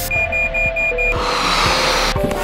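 Background music with a quick run of five high electronic alarm beeps, about five a second, in the first second: a carbon monoxide detector's alarm. Then a hissing swell rises under the music.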